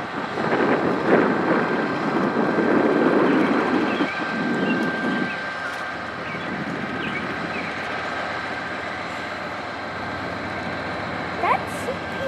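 Diesel-electric locomotives, Soo Line 4598 and a CP Rail unit, moving slowly forward: a low engine rumble with a thin steady high whine. The rumble is louder for about the first five seconds, then settles lower and steady.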